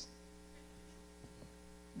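Near silence with a steady, faint electrical mains hum made of several even tones.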